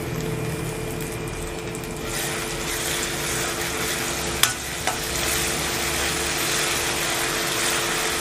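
Food sizzling as it sautés in hot oil in a pan. The sizzle grows louder about two seconds in, and two sharp clicks of the stirring utensil against the pan come near the middle.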